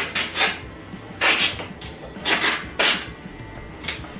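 Duct tape being pulled off the roll in several short, noisy rips about a second apart as it is wound around an arm.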